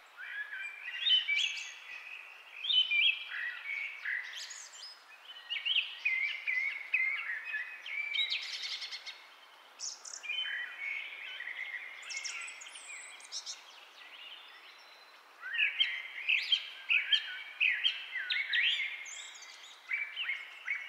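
Birds chirping and singing in quick, repeated short calls, thinning out for a couple of seconds past the middle before picking up again.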